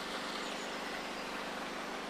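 Steady, even outdoor background noise, a constant hiss with no distinct events.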